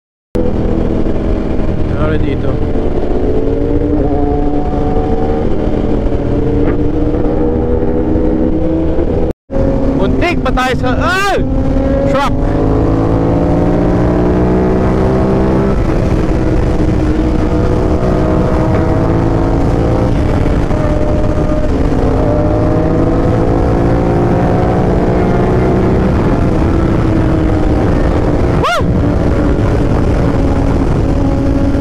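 Aprilia RS660 parallel-twin sportbike engine under way at speed, its pitch climbing and falling back several times through acceleration and gear changes, with wind noise. The sound cuts out briefly twice.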